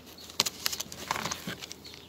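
Hands handling small objects at a bee smoker: a few sharp, separate clicks and light rustles.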